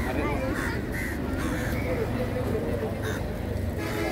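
Crows cawing again and again over background voices and a low steady rumble.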